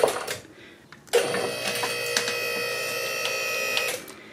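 QuickJack portable lift's electric hydraulic power unit running as the lift raises the car: a steady motor-and-pump whine that starts about a second in and cuts off just before the end.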